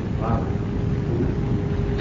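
Steady hiss and low hum of the recording's background noise, with a faint steady tone, during a pause in speech; a faint, brief voice sounds about a quarter second in.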